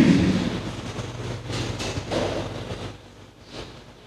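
A church congregation stirring: indistinct rustling and shuffling noise with a low rumble, coming in a few soft surges and fading toward the end.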